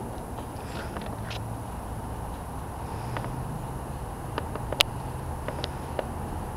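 A horse trotting on soft indoor-arena footing: muffled hoofbeats under a steady low rumble, with a few sharp clicks in the second half, the loudest about five seconds in.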